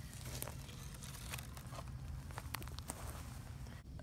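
Dry pine needles and leaf litter rustling and crackling as they are disturbed by hand, with a few sharp clicks scattered through.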